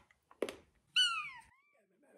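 A kitten meows once, about a second in. It is a single high meow that falls in pitch and turns up again at the end, and a short knock comes just before it.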